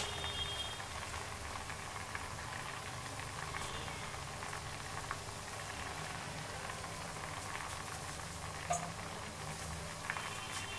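Faint, steady bubbling and hiss of toor dal boiling in a steel pot on a gas stove, with one small click near the end.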